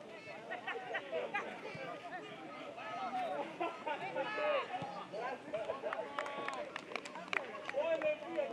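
Players and coaches shouting and calling to each other across an open football pitch during play, several voices overlapping, with a few sharp knocks about three-quarters of the way through.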